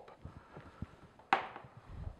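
A drinking glass set down on a countertop: one sharp knock about a second and a half in, among faint handling sounds and a couple of low thuds near the end.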